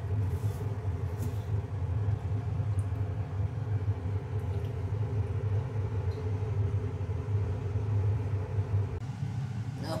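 A steady low motor hum, with no rhythm or change in pitch, that stops about a second before the end as a woman starts to speak.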